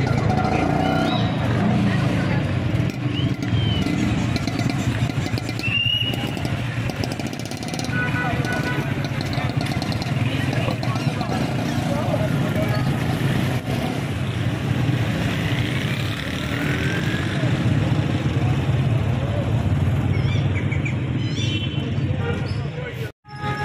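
Busy street traffic: motorcycle and car engines running close by, with the chatter of many people mixed in.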